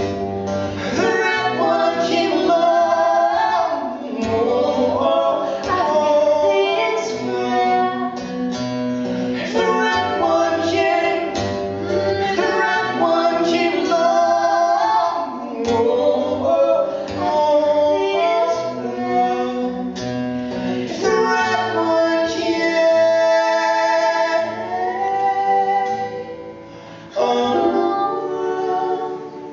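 Live acoustic duet: a woman and a man singing together over strummed acoustic guitar. A long note is held a few seconds before the end.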